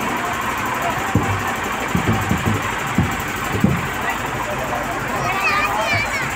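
Outdoor crowd chatter. Several irregular low thumps come in the first half, and voices rise to shouts near the end.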